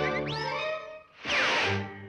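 Cartoon orchestral score with a quick rising whistle-like zip, then a loud whoosh with a falling whistle about a second and a half in, cartoon sound effects for a fast dash.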